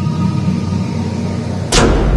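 Logo ident sound design: a steady low drone with a faint held tone, then a sharp whoosh-hit near the end, after which a deep bass rumble comes in under the music.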